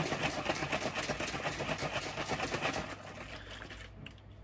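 Liquid sloshing fast and rhythmically in a 1.5-litre plastic bottle of water and fertilizer powder shaken hard by hand to dissolve the powder into a stock solution. The shaking stops about three seconds in.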